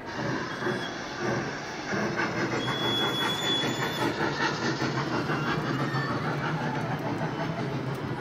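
A trackless kiddie train ride rolling past, its locomotive and carriages giving off steady train-like running sounds. About three seconds in, a steady high tone lasts for over a second.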